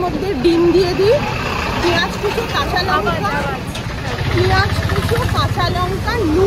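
People talking over a steady low rumble of passing vehicle traffic, the rumble growing louder about four seconds in.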